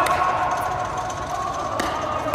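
Sharp pops of a paddle striking a plastic pickleball during a rally: one hard hit at the start and another just before the end, with a fainter tap, like the ball bouncing on the court, in between.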